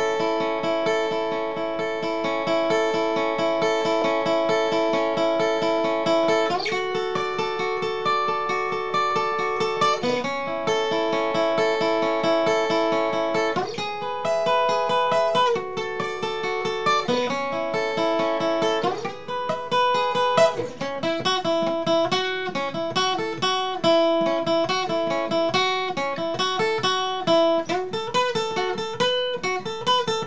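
Solo acoustic guitar, fingerpicked. Held chords ring and change every few seconds, then give way to a busier run of single notes about two-thirds of the way through.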